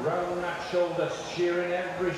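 Speech only: a man's voice talking in slow, drawn-out phrases, typical of a live commentator.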